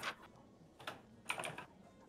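Computer keyboard typing: a few scattered, fairly faint keystrokes, with a short run of them about halfway through.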